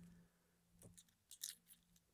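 Near silence with a few faint small clicks about a second in and later, from a brass key on a metal key ring being handled.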